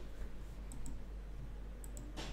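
Computer mouse clicking: two quick double clicks about a second apart, over a faint steady low hum.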